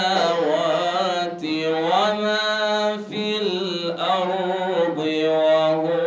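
A solo male voice reciting the Qur'an in melodic chant (tajwid), holding long ornamented notes that slide up and down, with short pauses for breath.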